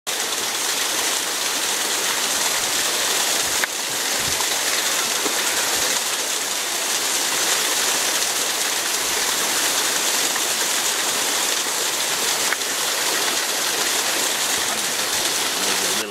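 Steady rushing water with a constant hiss, with two brief clicks, one about four seconds in and one near the end.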